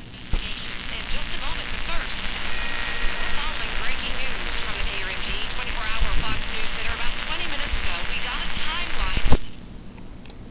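Homemade matchbox AM radio (TA7642 chip, 1000 µH axial inductor in place of a coil, 1.5 V solar cell) playing a local AM station through its small piezo earpiece: thin broadcast voices over crackling static and mains hum picked up from the nearby lamp cord. The sound cuts off with a click near the end.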